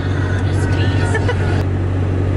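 Steady low rumble of a car's engine and tyres heard from inside the moving car's cabin, with a faint voice briefly about half a second in.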